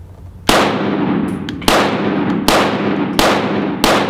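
Five pistol shots from a Walther PDP, fired in a string that quickens after the first, beginning about half a second in. Each shot rings out with a long echo off the walls of an indoor range.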